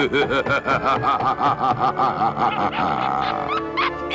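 A cartoon cat's rapid, rhythmic snickering laugh over background music, ending with a short rising musical flourish.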